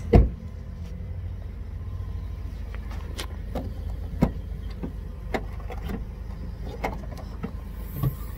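A 2013 Kia Sorento's rear door shuts with a loud thump just after the start. Scattered clicks and knocks follow, the sharpest about four seconds in, as the rear liftgate latch is released and the liftgate raised, over steady low-pitched background noise.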